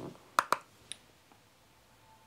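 A makeup brush tapped twice against a handheld eyeshadow palette in two quick, sharp taps, then a fainter third tap, as eyeshadow is picked up on the brush.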